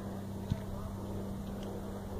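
Steady low rumble of wind on the microphone, with a faint steady hum and one light click about half a second in.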